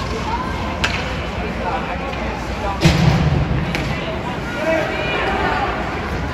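Ice hockey play heard from the stands: sharp clacks of sticks and puck, the loudest a heavy bang with a low thud about three seconds in, over crowd chatter and distant shouts in the rink.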